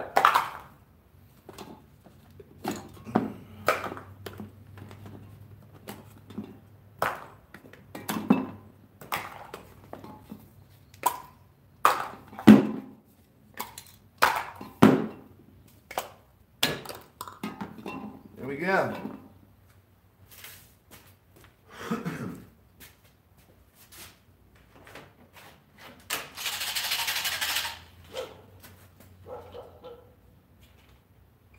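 Aerosol spray-paint cans knocking and clinking as they are picked up, moved and set down on a table, with plastic caps being handled. Near the end there is a steady hiss of about two seconds.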